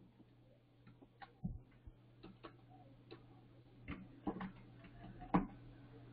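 Computer keyboard keys clicking as a few characters are typed, about a dozen separate irregular taps, with a faint steady low hum underneath.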